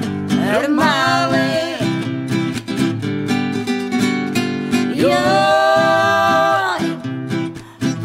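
Romani folk song: a singer's voice holds long, wavering notes over guitar accompaniment, one phrase about a second in and another around five seconds in.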